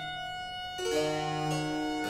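Solo violin playing a baroque sonata movement with a harpsichord continuo: a single held note, then lower notes entering a little under a second in.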